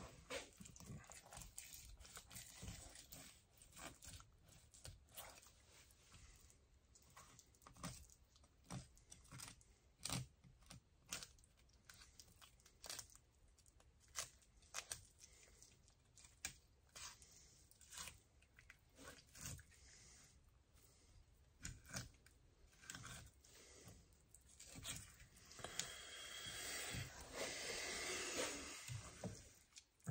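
Faint crunching and tearing of a fish knife cutting through a crappie to take off a fillet, in irregular short ticks. Near the end they run together into a steadier scraping.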